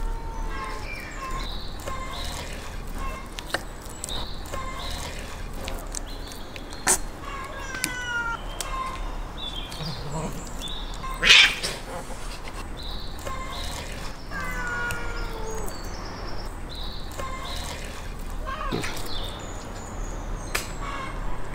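Domestic cats meowing over and over, short calls that slide up and down in pitch every second or two, with a few sharp knocks and one louder, brief burst about halfway through.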